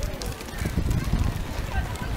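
Many footsteps on a wet road, with the hard, irregular clatter of wooden clogs, under the chatter of a walking crowd.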